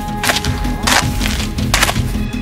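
Three sharp crackling bursts, about two-thirds of a second apart, like dry twigs and leaf litter snapping underfoot, over background music.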